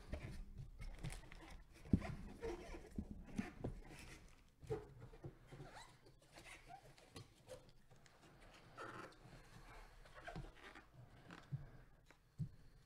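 Faint handling noises: scattered light knocks and rustles of a cardboard jersey box and its plastic bag being moved, with a sharp click about two seconds in.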